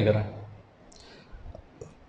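A man's preaching voice, held in a drawn-out sung tone, trails off at the start, followed by a quiet pause with a few faint clicks.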